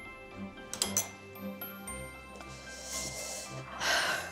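Background music: a soft instrumental bed of sustained notes, with a swell of noise building near the end.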